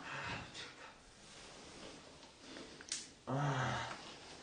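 A man groaning as if in pain: one short, low moan near the end, with a faint click just before it.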